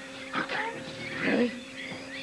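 Two short pained vocal sounds, a whimper or groan, about half a second in and again near the middle, as a person is lifted and carried.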